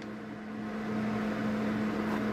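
Steady low hum on one pitch over an even background whir, slowly growing a little louder, with no distinct knocks or clicks.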